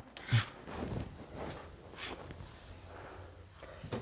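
Faint rustling and soft handling sounds of a sheer net curtain being straightened by hand, with a short louder sound just after the start.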